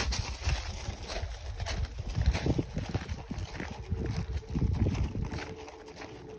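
Footsteps crunching on a gravel path at a walking pace, over a low rumble of wind on the microphone.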